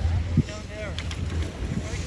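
Steady low wind rumble buffeting the microphone, with voices talking over it.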